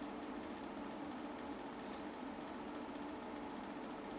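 Quiet, steady room tone: a low hum with a faint hiss, unchanging throughout.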